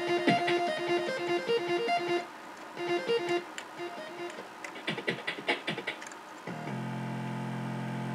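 Amiga 3000 audio output playing a ProTracker module in the test kit's channel test, with channels soloed in turn. A repeating synth melody comes first, then sparse drum hits, and a low bass line enters near the end.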